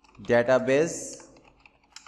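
Computer keyboard typing, a few light key clicks in the second half, after a short spoken phrase that is the loudest sound.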